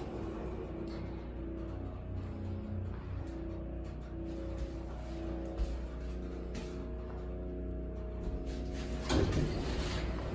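Schindler elevator car running with a steady low hum under faint background music, then a short rush of noise about nine seconds in as the car doors slide open.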